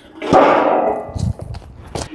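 Metal lid of a steel drum being put back on: a sudden scraping clatter of metal on metal about a third of a second in that dies away over about a second, with a sharp knock near the end.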